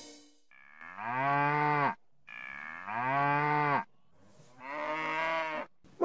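A cow mooing three times, each moo about a second and a half long and dropping in pitch as it ends.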